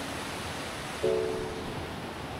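Mountain stream rushing over rocks, a steady hiss of running water, with one chord of soft background music about a second in.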